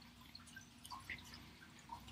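Near silence: room tone, with a few faint soft clicks about a second in.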